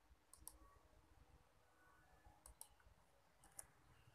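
Faint computer mouse clicks in quick pairs, three times over the few seconds, against near silence.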